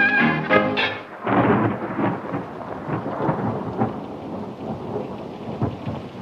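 A brass swing-band tune plays for about the first second and cuts off. It gives way to steady rain with rumbles of thunder.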